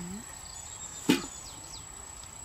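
A single sharp click about a second in, over a thin, steady, high-pitched whine, with a brief murmur of a voice at the very start.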